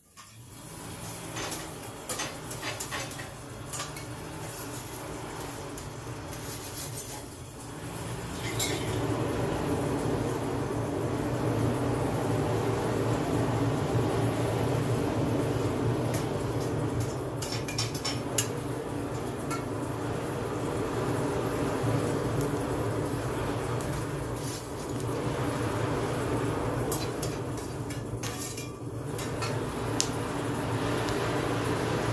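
Coal forge fire under forced air from its blower: a steady rushing noise that grows louder about eight seconds in and then holds. Scattered metallic clinks and scrapes come from a steel bar and tools being worked in the coals.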